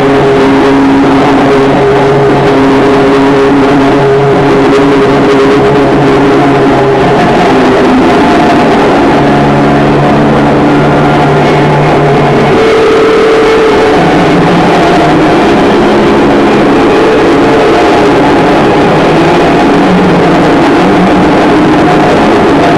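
Live noise music played at a very loud, constant level: a dense, distorted wall of noise with low held drones that shift to new pitches every few seconds.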